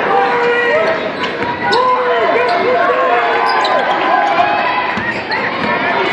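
Basketball sneakers squeaking on a hardwood court in short rising-and-falling squeals, with a basketball bouncing, over the murmur of a gym crowd.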